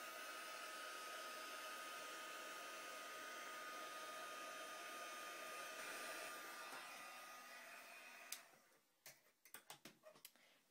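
Handheld craft heat tool running, a steady rush of hot air with a thin whine, heat-setting wet acrylic paint. It switches off about eight seconds in, followed by a few faint clicks.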